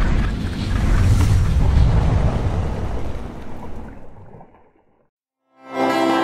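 Loud rumbling rush of wind and churning boat-wake water on the camera, with no clear pitch, fading out about four and a half seconds in. After a brief silence, a guitar-led song starts just before the end.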